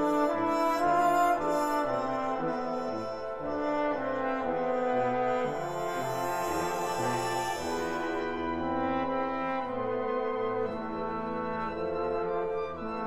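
Brass-led wind orchestra playing a classical piece: sustained chords over a moving bass line.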